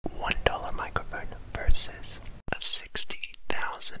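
Close, breathy whispering into a cheap handheld microphone, broken by many sharp clicks, over a low background hum. The hum stops about two and a half seconds in and the whispering carries on cleaner.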